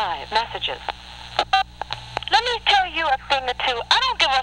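A person talking in a thin, narrow voice, as though through a telephone line, over a steady low hum.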